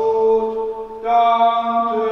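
Slow liturgical church music in sustained chords, with a steady low note underneath. The chord breaks off briefly just before a second in, and a new one begins.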